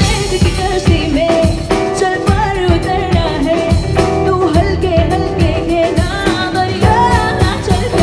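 A woman singing a pop song live with a band: drum kit, electric guitar and keyboard under a held, wavering vocal melody.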